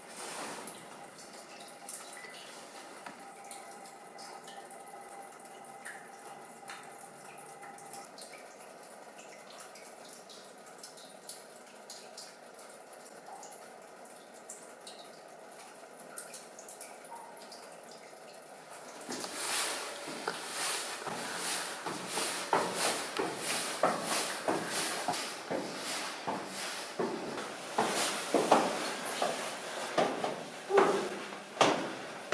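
Water dripping from the wet rock of a copper mine chamber: a scattering of separate drips over a faint steady hum. About two-thirds of the way through, the dripping becomes louder and much busier.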